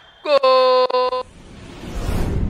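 A horn sounds one steady note in three short blasts, about a second in all, followed by a rising whoosh near the end.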